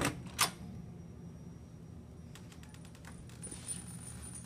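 A round doorknob being turned, its latch clicking twice about half a second apart, then a few fainter clicks as the door is opened.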